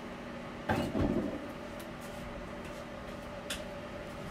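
Objects being handled off-frame: a brief clunk and rattle about a second in, then a single sharp click near the end, over a steady low hum.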